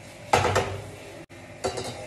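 Metal cookware clattering on a gas stove's steel pan support as a pot is set down, a sharp clank shortly after the start and a second, lighter clank near the end.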